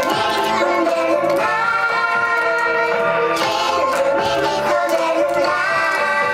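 A group of young children singing a song together with musical accompaniment.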